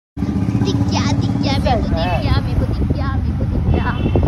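A motorcycle riding along a street, a steady low rumble that cuts in abruptly just after the start, with voices talking over it.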